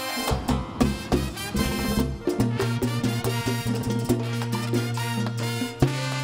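Live Dominican mambo-merengue band playing an instrumental passage: trumpets and trombone over congas, güira and a held low bass note, with a fast, steady rhythm.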